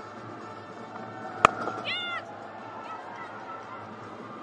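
A single sharp crack of a cricket bat striking the ball about one and a half seconds in, the loudest sound here, followed half a second later by a short high shout from a player, over a steady stadium background.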